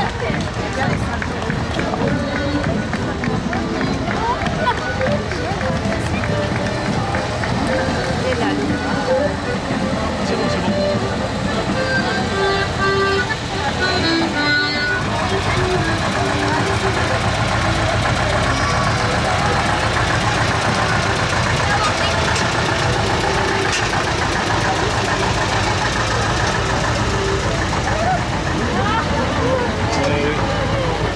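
Folk dance music with crowd chatter, then, from about halfway, a farm tractor's engine running steadily as it passes close by.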